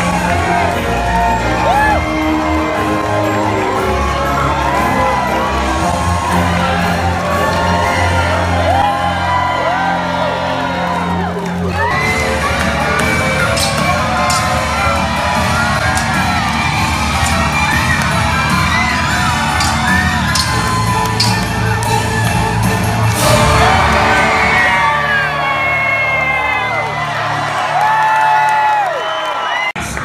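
Loud dramatic show music over an arena crowd whooping and cheering, with sharp metallic clashes of a sword fight through the middle part.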